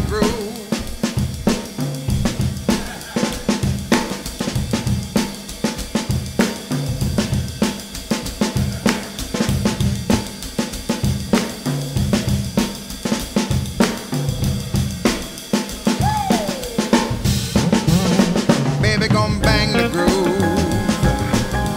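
Live band playing an instrumental groove, led by a drum kit with snare, bass drum and cymbals, over a bass line and electric guitar.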